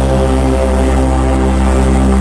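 Electronic dance music played loud over a club sound system: a deep, sustained bass drone under held synth chords, with no drum hits.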